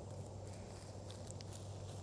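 Quiet outdoor background noise: a faint, steady low rumble with no distinct events.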